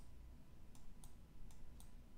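Faint, sharp clicks of a stylus tapping on a tablet as marks are hand-drawn, about four or five irregular taps over a faint low hum.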